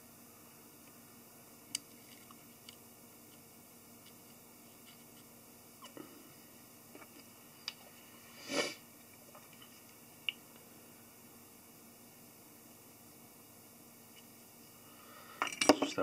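Quiet room tone with a few faint, isolated clicks and one brief scrape a little past halfway, from small fly-tying tools being handled while thinned head cement is applied to the thread on the hook.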